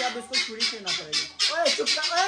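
Birds squawking, with a few short, loud calls that rise and fall in pitch in the second half, mixed with a man's voice.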